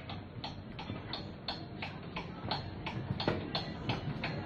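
Sharp ticks repeating evenly, about three a second, over a steady low background rumble.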